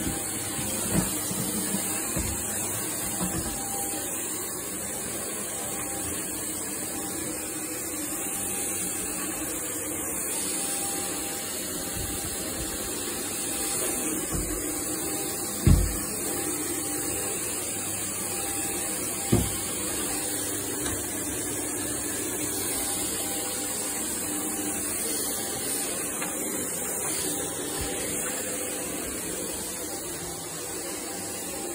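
Shark vacuum cleaner running steadily as it is pushed back and forth over carpet, with several short dull knocks, the loudest about halfway through.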